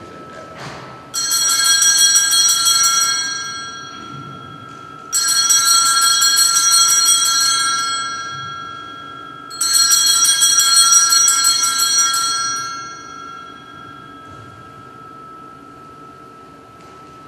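Altar bells shaken three times in a rapid, jingling peal. Each peal lasts about three seconds and fades out, starting about a second in, about five seconds in, and near ten seconds in. They mark the elevation of the chalice at the consecration of the Mass.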